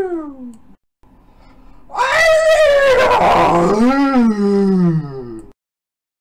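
Loud cat-like meowing wails: a short call sliding down in pitch, then after a pause a long drawn-out call that wavers and falls steadily.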